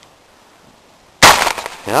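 A single gunshot a little over a second in, sharp and loud with a short fading tail, fired to kill a trapped skunk.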